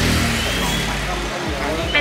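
A motor vehicle engine running steadily, with voices around it.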